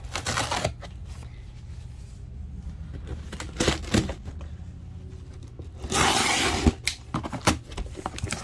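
Cardboard shipping boxes being handled and shifted, with scattered knocks and bumps and a rasping noise lasting just over half a second about six seconds in.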